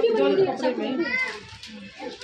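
Speech: people talking, a child's voice among them, loudest in the first second and trailing off near the end.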